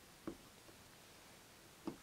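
Two faint short taps, one about a quarter second in and one near the end, from a rubber impeller being worked into a brass pump housing by hand, over near-silent room tone.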